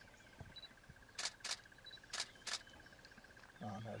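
Camera shutters clicking four times, in two quick pairs about a second apart, over a faint steady high pulsing drone.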